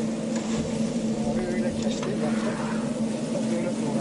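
Background voices over a steady low hum.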